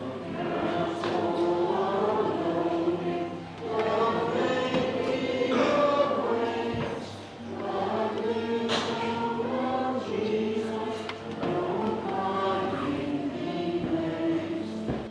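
A choir singing together in long held phrases, with brief breaks between lines about every three to four seconds.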